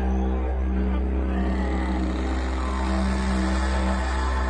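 Didgeridoo playing a steady low drone, with overtones that sweep up and down in pitch above it.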